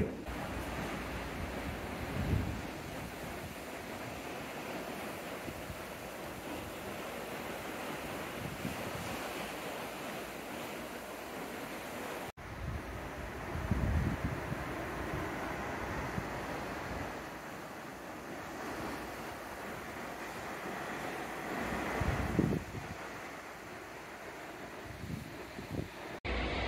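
Sea water rushing and breaking in a moving ship's wake, with steady wind on the microphone. Low gusts of wind buffeting come about two seconds in, around fourteen seconds, and again around twenty-two seconds, and the sound drops out briefly about twelve seconds in.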